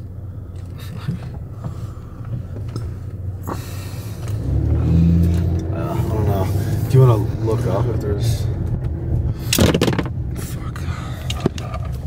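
Car cabin noise while driving: a steady low rumble of engine and road noise, swelling louder from about four seconds in. There is a short loud burst of noise just under ten seconds in.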